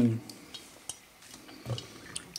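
A few light clinks of an enamel lid against an enamel bowl as it is handled and set back down inside the bowl.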